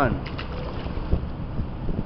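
Wind buffeting the camera's microphone in a steady low rumble, with a few light clicks and one sharp knock a little past the middle.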